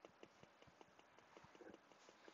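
Faint, rapid clicking taps, several a second, of a stylus tip on a tablet's glass screen.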